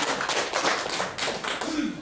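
Several people clapping their hands in a quick, irregular patter of claps that thins out near the end.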